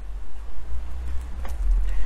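A steady low rumble with a faint hiss over it, and a faint click about one and a half seconds in.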